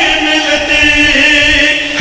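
A man chanting Shia devotional verse (zakiri recitation), holding one long sung note that steps slightly lower in pitch about a second in.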